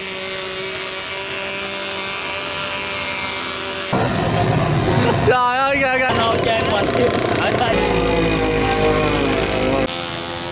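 Radio-controlled model fishing boat's motor running with a steady whine. About four seconds in, the sound cuts to louder voices and street noise, and a steady motor hum returns for the last couple of seconds.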